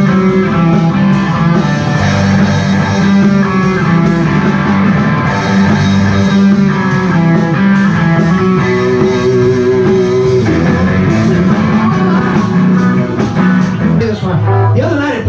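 Live rock band playing loudly, with electric guitars over bass and a drum kit.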